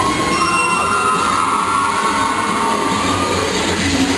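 A long, high squealing tone in a cheer routine's music mix. It starts abruptly, steps up slightly in pitch just after it begins, holds for about three and a half seconds and then fades.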